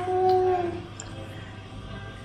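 A person's long, drawn-out vocal note, held at one pitch and dipping slightly as it ends under a second in.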